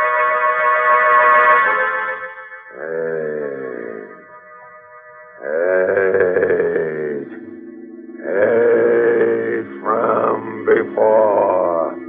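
Radio-drama music bridge of sustained chords with a gorilla's grunting calls voiced over it: about four drawn-out calls, each rising and falling in pitch.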